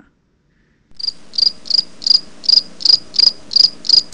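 A high-pitched chirp repeated evenly about three times a second, starting about a second in and stopping abruptly.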